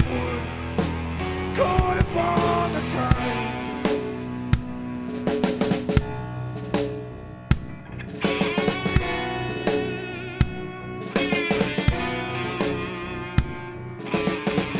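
Live blues band playing an instrumental passage: drum kit hits with bass drum and snare under electric guitar and keyboard, no vocals.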